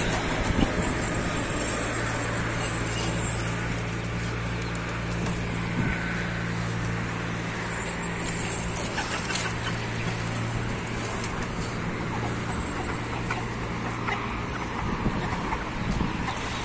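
A steady low motor hum over a background of outdoor noise.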